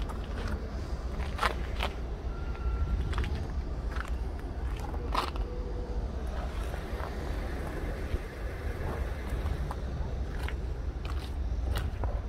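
Steady low outdoor rumble with a few sharp clicks and taps scattered through it.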